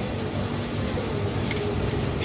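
Steady background noise with a single faint click about one and a half seconds in.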